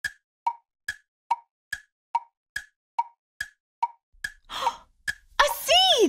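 Tick-tock sound effect of a thinking timer: short woodblock-like ticks about two and a half a second, alternating high and low. It stops about five seconds in, followed by a short swell and a voice exclaiming near the end.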